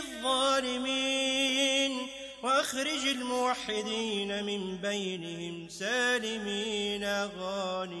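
Background music: a single voice chanting a slow, ornamented melody with long held notes that slide and waver in pitch.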